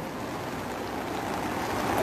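Steady rushing noise of heavy rain and floodwater, even throughout with no distinct events.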